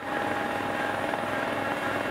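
Large self-propelled rotary snowblower running at work and throwing snow: a steady mechanical drone with a constant whine over a hiss.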